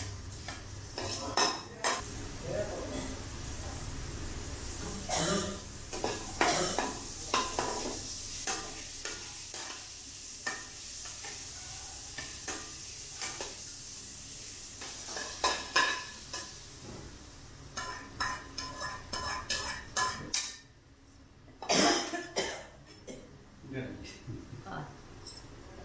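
Chopped green chilies sizzling in hot oil in a frying pan while a metal spatula stirs, scraping and knocking against the pan. Near the end the sizzling drops away and a couple of loud metal clatters follow.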